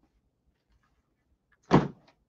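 A single short thump near the end, a hardcover book being set down on the desk close to the microphone.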